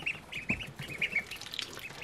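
Khaki Campbell ducklings peeping: a quick run of short, high peeps, several a second.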